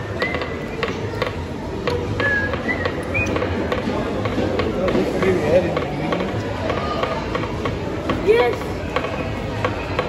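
Busy indoor hall full of children: a steady din of distant children's voices and calls, with scattered small clicks and knocks.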